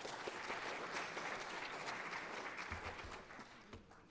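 Auditorium audience applauding, a dense patter of many hands clapping that is strongest over the first couple of seconds and dies away near the end.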